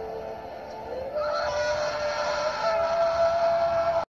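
A boy's long, held scream of pain from hydrogen peroxide stinging his scraped knee. It starts as a lower wail, rises in pitch and gets much louder about a second in, steps higher again near the end, and is cut off sharply.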